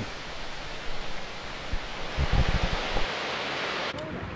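Narrow-gauge passenger coaches rolling past on the track: a steady rushing noise with a few low thumps about halfway through. It cuts off abruptly just before the end.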